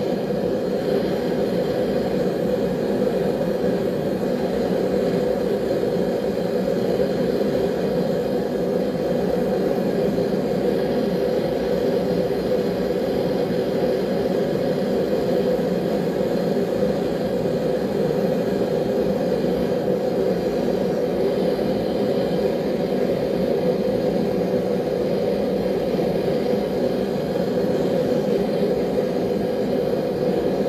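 Forge burner running with a steady, unbroken low rushing noise while a knife blade is brought back up to hardening heat just before the quench.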